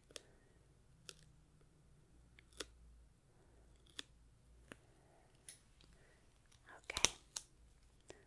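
A strip of duct tape slowly peeled close to the microphone, giving faint, sparse crackling ticks about a second apart. A soft 'okay' and a sharper tick come near the end.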